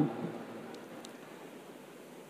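A pause in a man's speech at a microphone: a faint, steady background hiss of room tone, with the last syllable of his word trailing off at the very start and two faint ticks about a second in.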